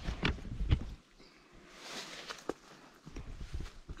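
Footsteps and rustling vegetation as someone moves through garden plants: irregular soft thumps and clicks, busiest in the first second and again near the end, with a brief rustle about two seconds in.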